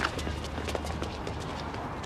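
Several people's running footsteps on pavement, growing fainter as the runners move away, over a steady low city hum.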